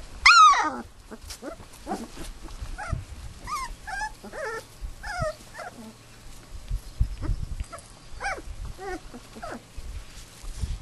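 Australian kelpie puppies whining and yelping: one loud yelp falling in pitch just after the start, then a scatter of short, high whines through the rest.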